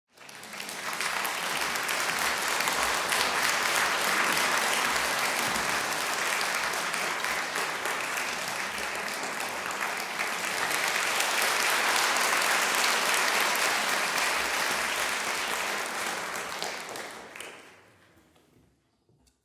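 Concert audience applauding as the performers come on stage, a steady patter of many hands that dies away near the end.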